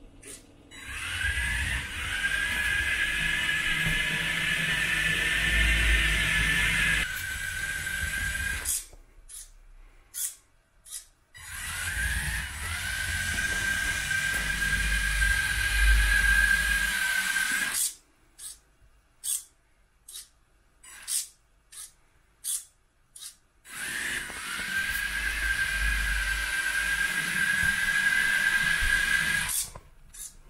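Small DC gear motors of an Elegoo Smart Robot Car driving on a tiled floor. They give three runs of a steady high whine, each rising briefly as the motors spin up and lasting several seconds, over the low rumble of the wheels. Between the runs, while the car stands still, come a series of sharp clicks.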